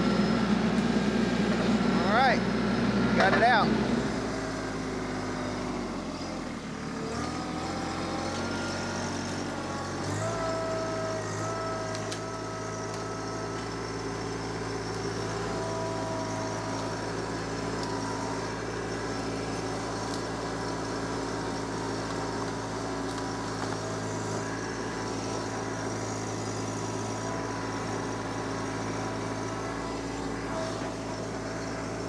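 Compact diesel tractor engine working under load, loud and labouring for the first few seconds as the loader pushes into brush and a stump in low range. The engine then drops back, changes speed for a few seconds, and from about ten seconds in runs steadily at a constant speed.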